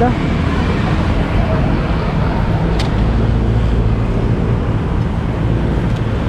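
Street traffic noise: a steady low rumble of vehicles on the road, with a single sharp click about three seconds in.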